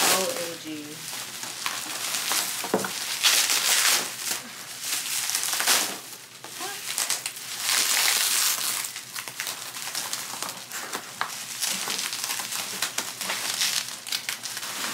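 Plastic bubble wrap crinkling and crackling in repeated bursts as it is pulled and bunched by hand.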